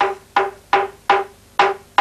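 A flat wooden mallet beating a strip of soaked mulberry bark on a wooden anvil log to make tapa cloth: a repetitive banging of wood. There are about five even strikes in two seconds, each ringing at the same pitch.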